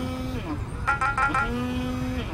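Mobile phone ringtone: a quick run of short high beeping notes followed by a long low tone, the pattern repeating about every one and a half seconds as the phone rings unanswered.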